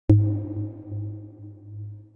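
Electronic logo sting: a sudden deep hit right at the start, then a low droning tone that slowly fades with a faint wavering.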